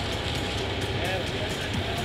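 Manitou telehandler's diesel engine running steadily while it holds the lifted plane on its hook, a continuous low rumble under background music, with faint voices about a second in.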